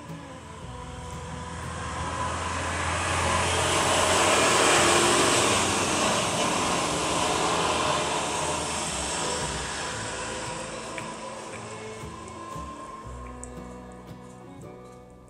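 An airplane passing overhead: a broad rushing noise that swells over the first few seconds, peaks about five seconds in, then slowly fades.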